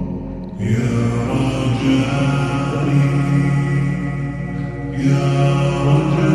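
Wordless, chant-like nasheed vocals, slowed down and drenched in reverb, swelling fuller about half a second in.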